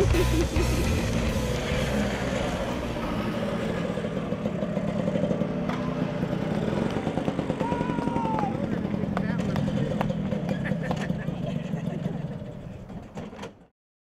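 Classic two-stroke scooter engines running as riders pass by, a steady sound with a fast, even pulsing that fades out near the end.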